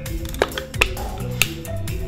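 Background music with a low bass line stepping from note to note and three sharp clicks.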